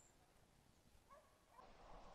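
Near silence: faint outdoor background with a few barely audible short chirps.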